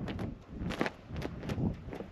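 Footsteps of a person walking, about two steps a second, over a low background rumble.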